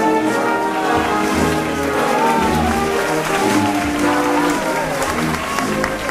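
Band music with held brass notes, and a crowd applauding over it from about a second in.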